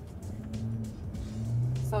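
Steady low hum of a truck driving, heard inside the cab, with background music. The hum gets louder about one and a half seconds in.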